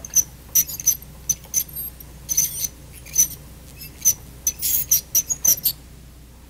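Piezoelectric ultrasonic scaler tip scraping along a typodont's plastic teeth: a run of short, irregular high-pitched squeaks and chirps with each sweeping stroke, stopping just before the end. The squeal comes from the tip on the model teeth and does not happen on real teeth.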